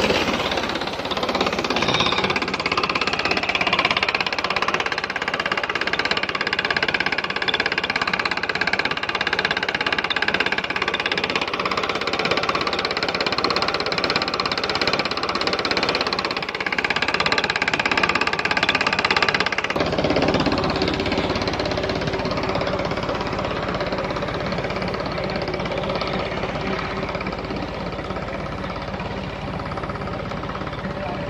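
Water gushing from a tractor-driven tubewell's outlet pipe into an irrigation channel, with the tractor engine running steadily underneath. About two-thirds of the way through, the rush of water drops away and the engine's low, even hum becomes the main sound.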